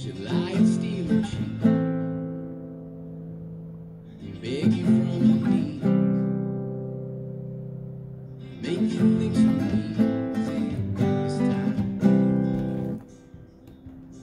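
Nylon-string classical guitar strummed in a down, down, up, down, up pattern. It comes in three bursts of chords, each left ringing and fading before the next, and stops about a second before the end.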